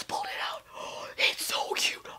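A woman whispering breathy, excited exclamations and gasps.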